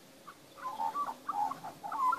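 Young Australian magpie calling: a quick run of short notes of varying pitch, starting about half a second in.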